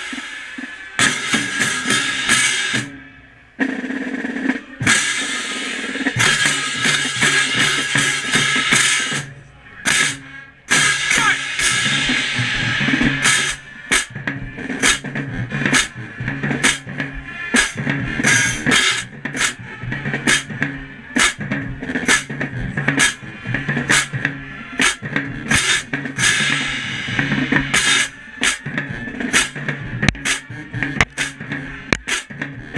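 A marching band playing, with a pair of hand crash cymbals struck right at the microphone over the drums and band. The cymbal crashes break off briefly twice early on, then from about a third of the way in they fall on a steady beat.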